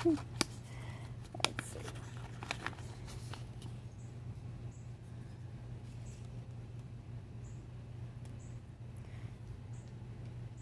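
Paper rustling and a few soft crinkles and clicks from a small torn paper photo envelope being handled and opened, mostly in the first few seconds, over a steady low hum.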